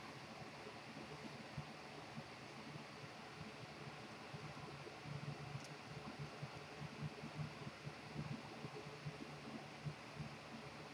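Faint room tone: a steady hiss with a low hum underneath.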